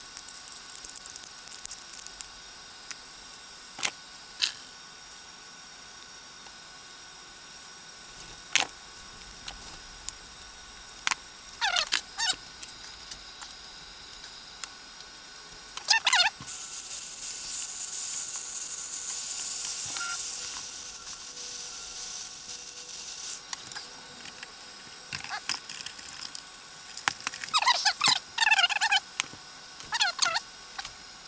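Hand work on a plastic 1/10-scale RC Jeep body: scattered clicks and rattles of small plastic parts and a screwdriver, with a few short squeaks that slide down in pitch. About sixteen seconds in, a steady hiss starts and is the loudest sound for about seven seconds before it cuts off.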